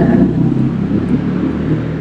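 A low, uneven engine-like rumble, like a motor vehicle running or passing.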